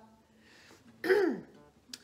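A woman's short wordless vocal sound about a second in, its pitch rising briefly and then sliding down, between pauses of near quiet; a small click near the end.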